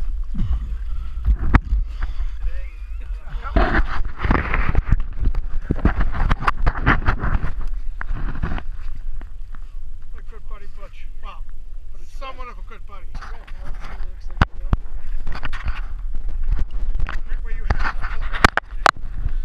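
Indistinct voices of people talking, over a steady low rumble, with scattered short knocks and clicks.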